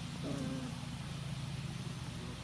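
Steady low hum of a running motor, with a brief faint voice-like sound about a quarter second in.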